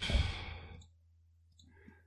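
A person's sigh, a single breath exhaled close to the microphone, starting with a low puff of air on the mic and fading out within about a second.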